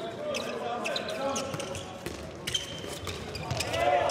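Court sounds of a handball game in play: the ball bouncing on the indoor court floor, shoes squeaking briefly, and players calling out.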